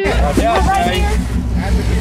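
Steady low rumble aboard a charter fishing boat, with voices talking over it.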